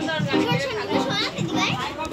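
Children's voices and chatter from a crowd of people, mixed with music that has a regular beat.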